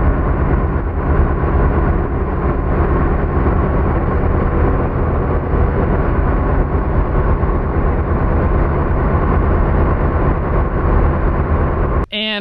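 Wakeboard tow boat's engine running at speed: a loud, steady drone with a deep hum.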